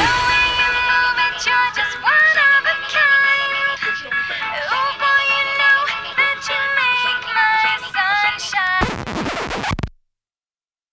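End of a pop song: the drums drop out and a gliding vocal melody carries on over sparse backing. Near the end comes about a second of noisy hiss, then the track cuts off to silence.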